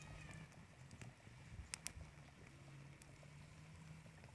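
Faint crackling of a wood fire burning under a boiling clay pot: scattered sharp pops about once a second, the loudest a little before halfway.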